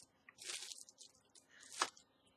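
Small plastic bag of crochet safety eyes crinkling as it is handled, in two short bursts: one about half a second in and a sharper one near the end.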